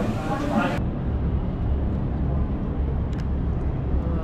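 Chatter at a busy indoor taco counter, cut off abruptly under a second in and replaced by a low steady outdoor rumble, with a couple of faint clicks about three seconds in.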